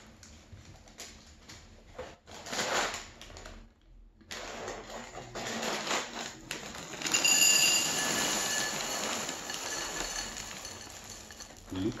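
Plastic cereal-bag liner crinkling as it is pulled open, then Cheerios poured into a glass bowl: a dense rattling patter of rings on glass that builds from about five seconds in, is loudest around seven to eight seconds, and tapers off.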